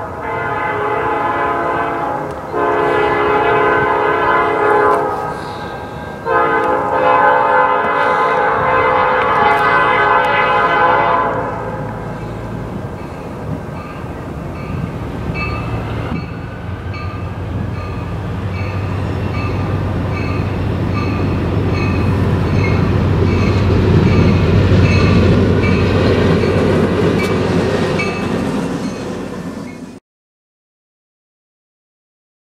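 Norfolk Southern EMD SD40-2 diesel locomotive sounding its horn for a grade crossing in three blasts, the last held about five seconds. A bell then rings steadily while the locomotive's diesel engine grows louder as it draws near.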